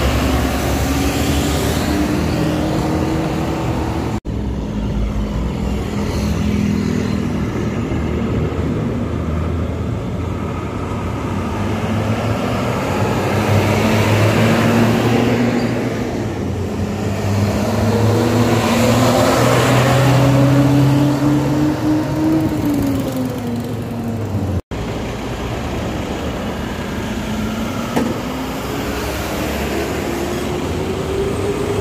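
Diesel bus engines on a highway as buses pass by. The engine note climbs steadily as a bus accelerates toward the roadside, peaks and falls away about 22 seconds in, with a steady rush of road and tyre noise underneath. The sound breaks off abruptly twice where the recording changes.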